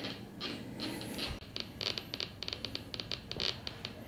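Home-built Minipulse Plus pulse induction metal detector sounding through its speaker. A couple of soft hissing responses come in the first second or so as a small ring is passed about 30 cm from the coil. From about a second and a half in, the speaker crackles with fast, irregular clicks, the sound of the threshold set near its most sensitive point.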